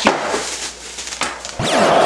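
Bubble wrap around a small car vacuum crinkling as it is handled, with a sharp click at the start. About a second and a half in, a loud intro sound effect with a sweeping whoosh cuts in.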